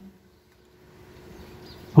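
A short pause in a man's speech over a microphone: faint steady hum and low background noise, with his voice starting again right at the end.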